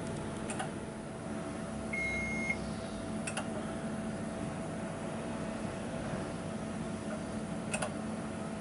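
Mitutoyo CNC coordinate measuring machine running a measuring program with a steady hum. One short steady beep comes about two seconds in, and a few sharp clicks come near the start, in the middle and near the end.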